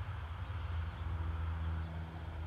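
Ford 460 big-block V8 idling steadily through short open tube headers, running with no cooling system hooked up.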